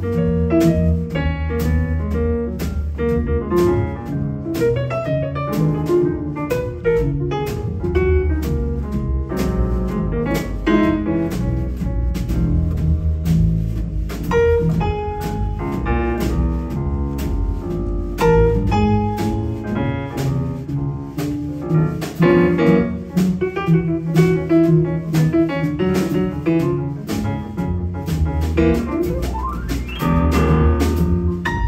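Jazz piano trio playing live: a Steinway grand piano leads with a run of notes over plucked upright double bass and a drum kit.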